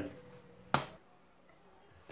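A single sharp clink of a metal fork against a ceramic bowl, a little under a second in, as the fork stirs dry gram flour and spices.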